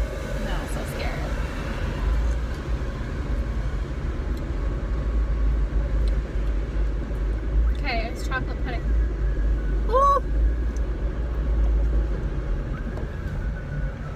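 Steady low rumble of a moving car's road and engine noise heard inside the cabin, with brief vocal sounds about eight and ten seconds in.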